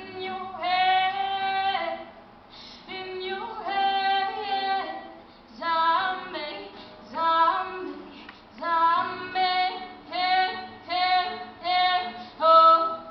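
A woman singing solo, holding long notes in phrases, with guitar accompaniment underneath.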